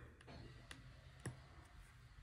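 Near silence with a few faint clicks from tweezers and stickers being handled on a paper planner page.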